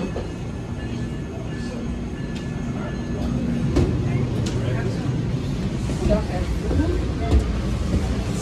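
Low steady hum and rumble of a Metra Electric Highliner electric double-deck railcar standing at the platform, with a thin steady tone for the first few seconds. Footsteps and a few sharp knocks sound as someone boards and climbs inside, with faint voices near the end.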